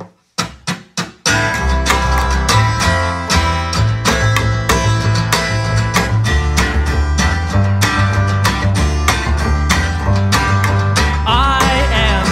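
A folk-punk band counts in with four quick clicks, then comes in loud and steady on guitar, bass and drums; a voice starts singing near the end.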